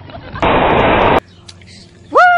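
A loud, even rush of noise starts about half a second in and cuts off abruptly less than a second later.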